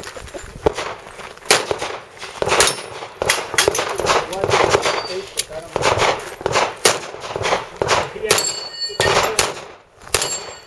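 A string of about a dozen handgun shots fired at an uneven pace, some close together in quick pairs, each with a short echo.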